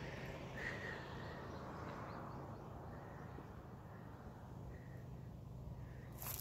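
Faint outdoor ambience: a low, steady rumble of distant road traffic that slowly fades, with a short high bird call about a second in and another near the end.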